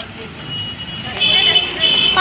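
Street traffic noise with a vehicle horn honking twice in short high-pitched blasts from a little past halfway, over background voices.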